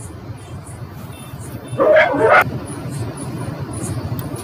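A dog barking briefly, once or twice, about two seconds in, over a steady low hum.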